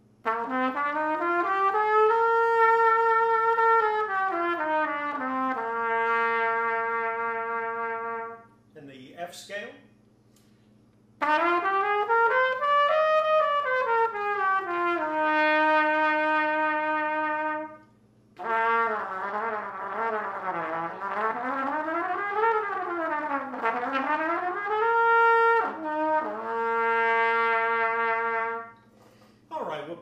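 H. N. White King Silvertone Bb trumpet with a sterling silver bell, played in three phrases: a scale climbing stepwise and coming back down, a second scale going a little higher and back, then fast runs rising and falling that end on a few held notes.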